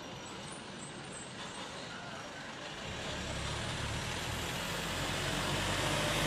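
A small truck's engine and tyres approaching along an empty road, growing steadily louder from about halfway through as it draws near.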